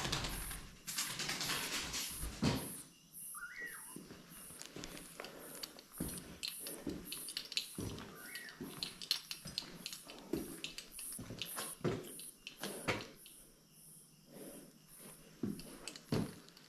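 Irregular footsteps, scuffs and knocks while moving through a small room, with two short squeaks, one about three seconds in and another about eight seconds in.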